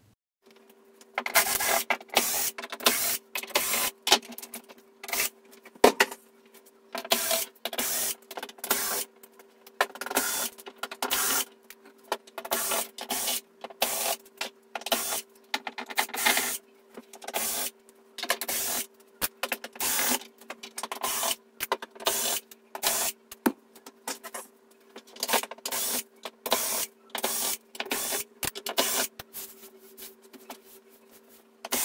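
Cordless electric screwdriver whirring in many short bursts, one after another, backing out the screws of an LED TV's rear cover. A faint steady hum runs underneath.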